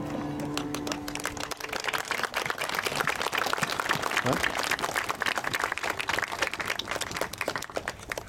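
A piece of music ends on held notes in the first second or two, then guests applaud, the clapping growing louder about two seconds in and continuing.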